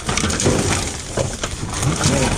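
Gloved hand rummaging through a heap of trash in a dumpster: cardboard, paper, picture frames and plastic bags rustling and knocking together in a dense run of small clatters.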